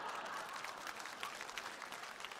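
Faint audience applause, a spatter of many hand claps that slowly thins out.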